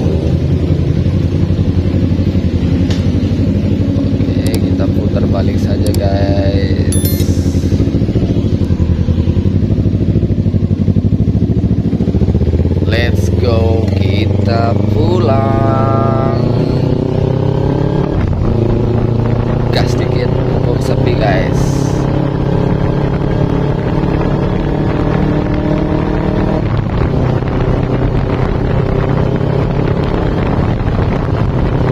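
Carburetted Kawasaki Ninja 250 parallel-twin engine running on the move, its pitch climbing through the middle as the bike accelerates. A few brief sharper sounds come over it.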